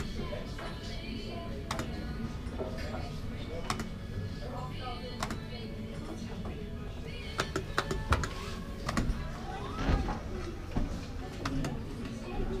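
Hill Billionaire fruit machine in play: reels spinning and stopping, sharp button and mechanism clicks, and the machine's electronic jingles and tones, including a rising tone near the end, over background chatter.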